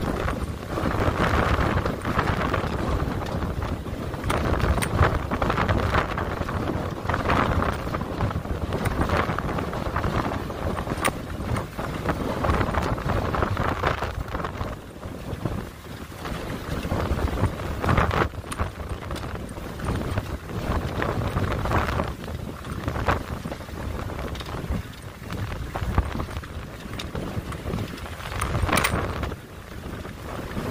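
Storm-force gusting wind buffeting the microphone, surging and easing every second or two, with a few sharp clicks.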